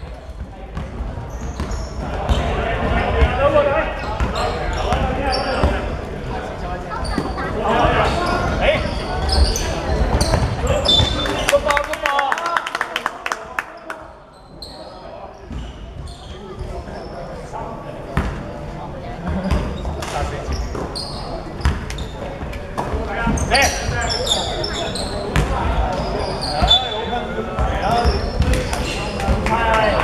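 Basketball bouncing on a wooden hall floor during play, mixed with players' indistinct shouts and calls that echo in the large sports hall. There is a brief quieter lull about halfway through.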